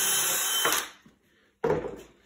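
Cordless drill running steadily as it bores a hole through a timber board, stopping under a second in. A short knock follows near the end.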